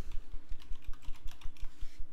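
Typing on a computer keyboard: a quick run of key clicks as a short word is typed.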